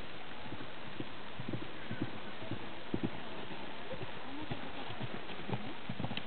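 Horse's hooves thudding dully on grass turf at a canter, the thuds growing more distinct from about a second and a half in, over a steady hiss.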